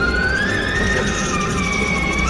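A siren-like wailing tone starts sharply, slides slowly upward and then holds. About a second in, further high tones join it, over a steady low drone.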